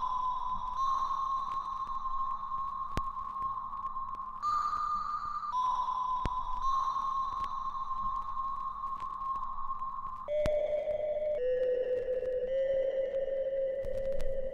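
Background music: a slow line of long, pure electronic held tones, moving between two high notes and stepping down to a lower note about ten seconds in, with a few faint clicks.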